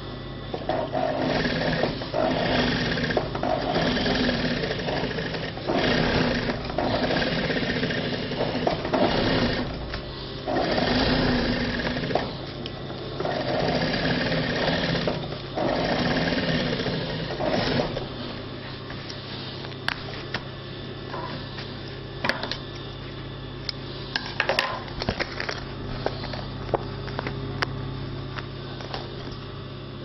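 Industrial sewing machine stitching through layered denim and foam sponge in five runs of a few seconds each, stopping and starting along a curved seam. After about 18 seconds the stitching stops and only a steady hum remains, with a few light clicks.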